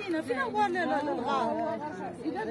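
Several people talking at once: overlapping chatter of voices.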